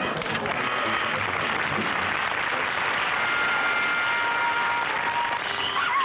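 Studio audience laughing and applauding, with a few held music notes sounding through it in the second half. Near the end a falling glide comes in.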